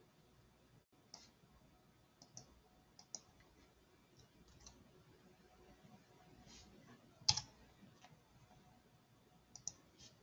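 Faint, scattered clicks of a computer mouse and keyboard during text editing, some in quick pairs, with the loudest single click about seven seconds in.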